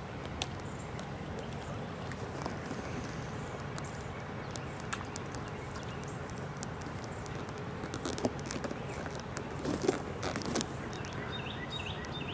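Steady outdoor background noise with scattered faint clicks, and a cluster of louder short sounds in the last few seconds.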